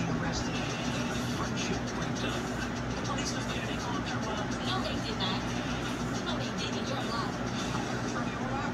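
Television dialogue heard faintly and indistinctly from the TV's speaker, over a steady low hum.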